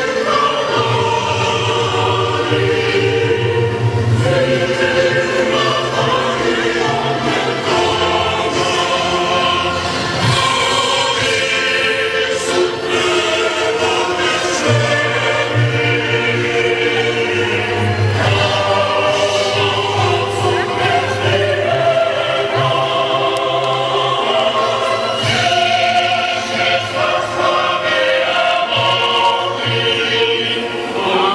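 A choir singing slow, sustained chords, with a low held bass note that drops out and returns.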